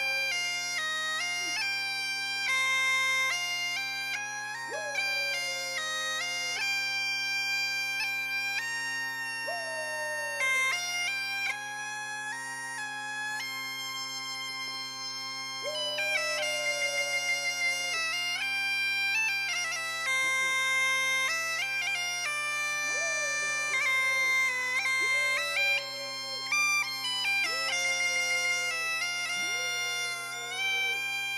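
Great Highland bagpipes playing a tune, a stepping chanter melody over steady drones. A voice howls along like a dog several times, each howl rising sharply and then sagging.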